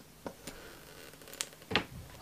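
Faint handling noise: a few light clicks and taps, one sharper than the rest, with a short breath-like sound near the end.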